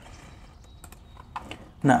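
A few quiet, scattered clicks of a computer mouse and keyboard.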